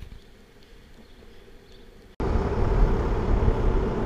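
Longboard wheels rolling over asphalt: a steady, low rumble that cuts in suddenly about two seconds in, after faint low background noise.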